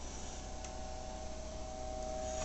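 Quiet room tone: a steady faint hum and hiss, with one faint tick about two-thirds of a second in.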